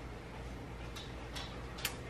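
Quiet room tone with a steady low hum and three short, soft clicks, spaced about half a second apart, in the second half.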